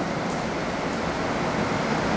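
A steady, even hiss of room and recording background noise, with no distinct event.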